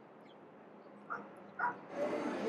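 A dog barks twice, about half a second apart, the second bark louder, over faint street background noise.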